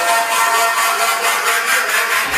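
Electronic dance track in a breakdown: the bass and kick drop out, leaving a fast, evenly pulsing hiss that grows brighter in the second half.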